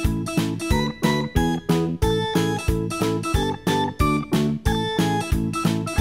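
Background music led by a plucked guitar, with notes struck in a steady beat of about three a second.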